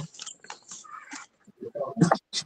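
Faint, indistinct speech over a video-call connection.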